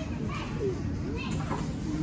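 Indistinct background chatter of other shoppers, children's voices among them, with a steady low rumble underneath.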